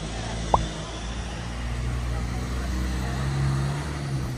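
Town street ambience: a motor vehicle's engine running, a low rumble that grows louder towards the end, with a brief squeak about half a second in.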